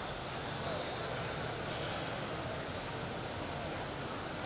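Steady, low background noise of a large, busy hall, with faint voices.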